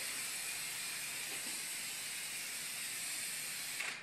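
Permethrin clothing-repellent spray hissing steadily onto fabric in one continuous burst, cutting off just before the end.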